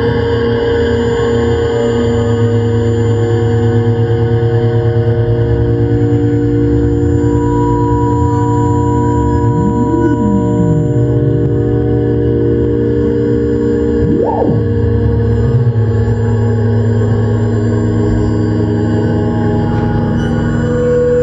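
Electroacoustic drone music made with the UPIC system and analog synthesizers: many steady electronic tones layered at once. About ten seconds in, a tone glides up and slides back down. Near fourteen seconds, a quicker, higher swoop rises and falls.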